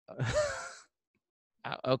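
A man's short, breathy sigh, under a second long, heard over a video call. Speech begins near the end.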